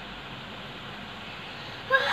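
Steady, even background noise with no distinct events, then a girl's voice starts just before the end.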